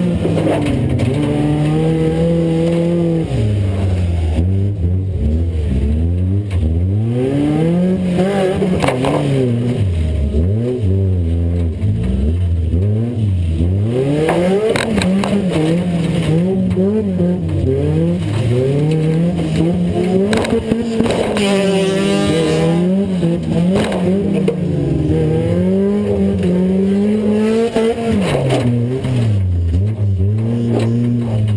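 Demo-cross race car's engine heard from inside the cabin, revving hard and dropping back over and over as the car is driven around the dirt track, climbing to its highest revs about two-thirds through. Short knocks and bangs of the car body are heard now and then.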